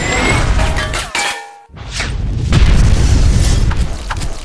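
Cinematic sound-design effects: heavy booms and sharp impacts, cutting out briefly about a second and a half in before a long low boom, with music mixed in.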